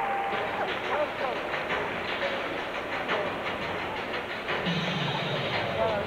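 Floor-exercise music playing over arena loudspeakers, heard thin and distant under a steady murmur of crowd noise, with a few sharp knocks in the first half.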